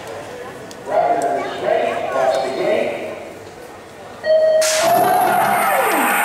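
BMX start-gate sequence: a voice calls the riders to the gate, then an electronic start tone sounds and the Pro Gate start gate drops with a sudden clang, about four and a half seconds in. The crowd cheers loudly as the race gets under way.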